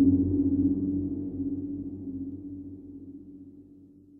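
A dark electronic synth drone of low held notes fades out steadily toward silence, the tail end of a dubstep track in the mix.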